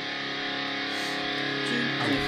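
Quiet guitar passage from a metalcore song's backing track, with held notes and chords ringing steadily.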